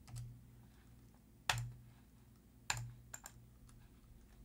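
A few isolated clicks of a computer mouse and keyboard, the loudest about a second and a half in and another near the three-second mark.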